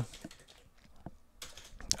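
Computer keyboard keystrokes: a few scattered taps, the loudest near the end.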